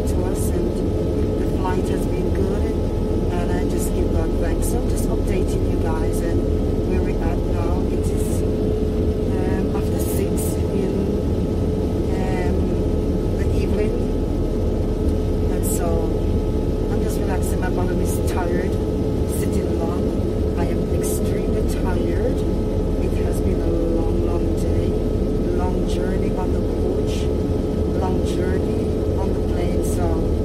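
Steady drone of a jet airliner cabin, a constant low rumble with a held hum, with faint murmuring voices mixed in.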